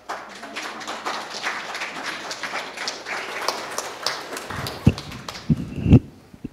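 Congregation applauding at the end of a hymn, the clapping thinning out after about four and a half seconds. A few low thumps follow, the loudest near the end.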